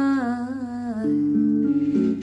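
A woman's voice holding a sung note with vibrato that slides down in pitch and ends about a second in, over a karaoke backing track of sustained chords that carries on alone.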